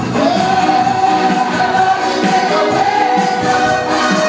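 Gospel choir singing together, led by voices on microphones and amplified through loudspeakers, with long held notes.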